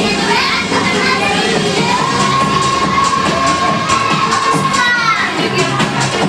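A room of children shouting and cheering over dance music, with one long held note lasting about three seconds in the middle that bends upward as it ends.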